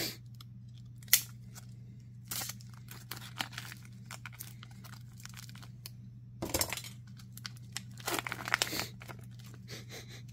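A vacuum-sealed plastic packet of rye bread being torn open by hand, in scattered crackles and rips of the plastic at irregular moments, with the sharpest one about a second in.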